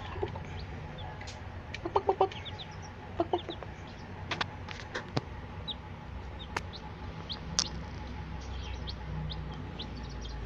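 Newborn Cochin bantam chicks peeping in short, high chirps while feeding, with a few sharp ticks of beaks pecking at feed on a steel plate. Quick runs of lower clucking calls come about two seconds in and again a second later.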